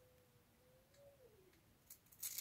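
Near silence: room tone, with a very faint thin whine that slides down in pitch about a second and a half in.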